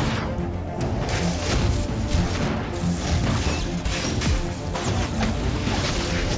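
Film score music with repeated crashing hits and whooshes: spell-blast sound effects in a wizard duel.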